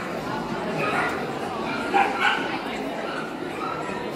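A dog barking a few short times, about one and two seconds in, over steady background chatter.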